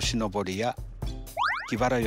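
A voice over background music, with a quick rising cartoon sound effect about one and a half seconds in.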